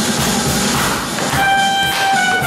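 Band music: drums playing, then a trumpet comes in about a second and a half in, holding one long note.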